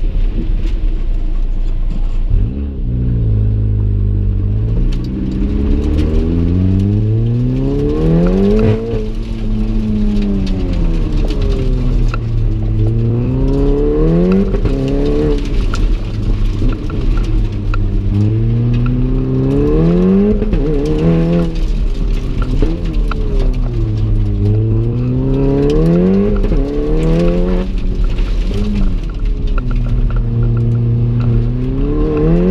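The turbocharged 2.0-litre four-cylinder of a Stage 3+ MK7 Golf R, heard from inside the cabin under hard driving. Its note climbs and falls over and over as it accelerates, shifts and slows between turns, with a sharp pitch drop at each shift.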